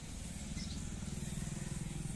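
An engine running steadily at low speed: a low, even rumble.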